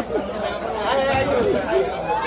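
Overlapping chatter of several people talking at once, with no single voice clear.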